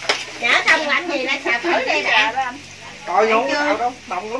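People talking, with a faint sizzle of frying underneath.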